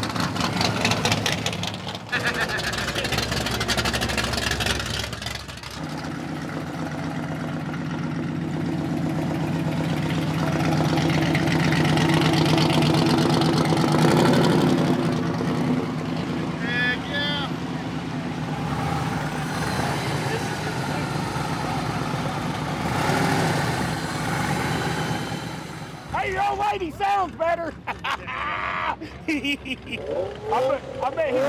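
Hot-rod and custom-vehicle engines running as they cruise slowly past on the street, with a steady deep engine note through most of the middle. Voices break in over it near the end.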